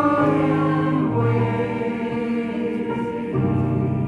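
Church congregation singing a hymn together, with long notes held for a second or more at a time.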